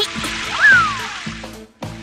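Cartoon water-spray sound effect: a steady hissing jet of water over background music, with a brief tone that rises and then slides down about half a second in.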